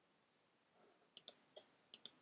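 Computer mouse clicking: a quick double click a little over a second in, a softer single click, then another click near the end.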